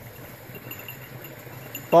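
Faint background noise: a low steady hum with faint high-pitched ticks, then a man's loud shout begins right at the end.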